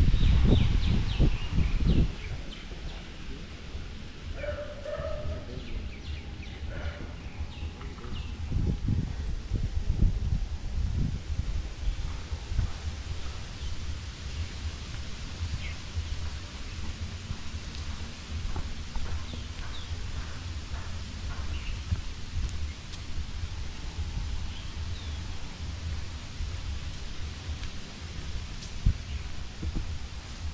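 Outdoor ambience dominated by wind buffeting the microphone, a low rumble that is strongest in the first two seconds. Scattered short animal calls sound over it.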